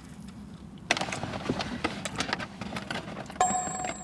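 Close-up chewing of mouthfuls of doughnut: soft, irregular wet clicks and smacks starting about a second in, over a low steady hum. A faint steady tone joins near the end.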